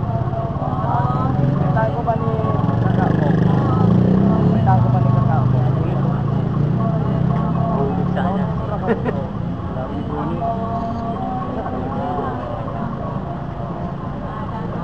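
Several voices chattering in a crowd over the low, steady running of a motor vehicle engine, which grows louder for a few seconds in the middle and then eases off.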